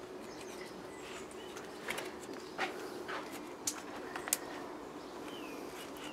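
A chisel-edged wooden stick scraping caked grime and oil off the cast-iron block of a Lister D stationary engine: quiet scratching with a few sharper scrapes and clicks.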